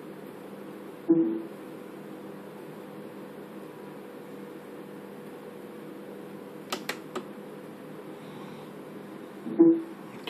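Steady low electrical hum with faint fixed tones, broken by a short pitched sound about a second in and another just before the end, and three quick clicks around seven seconds in.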